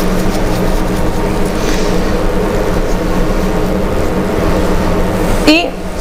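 A steady mechanical hum with a low drone and hiss, like a fan or motor running, ending as a woman starts speaking near the end.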